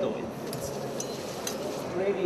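A few light metal clinks, three or four, as a spoon and a knife touch a stainless steel pot of boiling water, over a steady low hiss.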